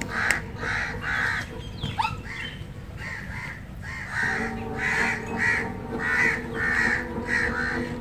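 Crows cawing over and over, many caws in quick succession, over a steady low hum that drops out for a moment midway.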